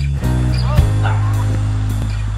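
Background rock music with sustained bass and guitar notes. Between about half a second and a second in comes a brief cluster of short, high, wavering yelping sounds.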